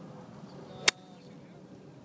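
Golf iron striking the ball on a full approach swing: one sharp, crisp click a little under a second in.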